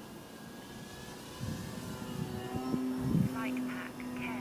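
Motor and propeller of a 38-inch Slick 540 radio-control aerobatic model plane, a steady drone in flight that grows louder toward about three seconds in as the plane comes close.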